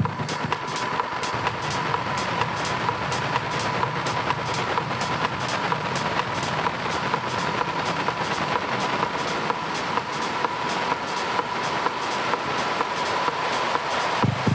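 Live techno in a breakdown with the kick drum dropped out: a steady ticking hi-hat rhythm runs over a dense hissing wash of noise and a held high synth tone.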